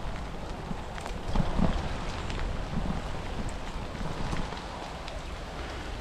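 Steady noise of a bicycle being ridden in the rain: tyres rolling on a wet path and wind rumbling on the microphone, with a few small knocks and a brief swell about a second and a half in.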